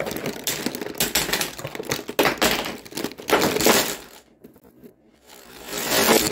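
A heap of plastic lipstick and lip-gloss tubes rattling and clattering against one another in a plastic tub as it is shaken, in several surges with a short lull about four seconds in.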